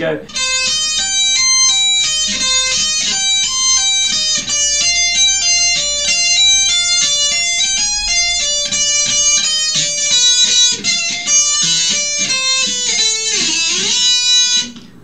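Jackson electric guitar playing a fast heavy-metal lead run of tapped, hammered-on and pulled-off notes in quick succession, with a swept section; a note swoops down and back up in pitch near the end.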